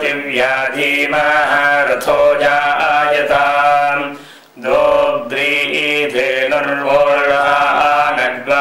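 A male voice chanting Vedic Sanskrit mantras in steady, sustained recitation, with a short breath pause about halfway through.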